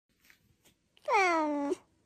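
A domestic cat meowing once, about a second in: a single drawn-out meow that falls in pitch.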